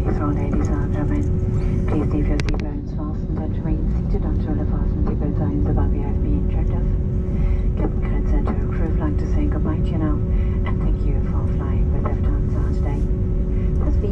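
Airbus A320neo cabin noise while taxiing: a steady low engine rumble with a constant hum tone, under indistinct voices.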